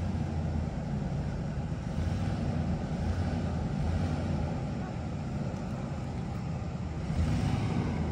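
Ford Expedition SUV's engine running at low speed, a steady low hum with a faint haze of noise over it.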